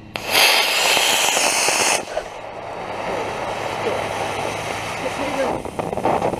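Model rocket motor lighting with a sudden loud hiss that burns for about two seconds and then cuts off, followed by a quieter steady rushing hiss as the motor's delay stage keeps smoking before the ejection pop.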